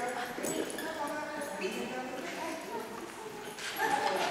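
Light clattering knocks as a large black puppy steps through a low PVC-pipe ladder on a rubber floor, over people talking indistinctly.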